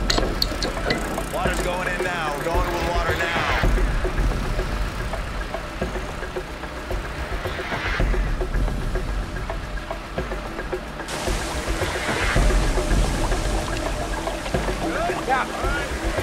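The soundtrack of a TV drama: a tense music score over a steady low rumble, with a few short lines of dialogue.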